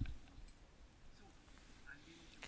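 Quiet room tone of a large conference hall in a pause in a man's speech, his last word cut off at the very start.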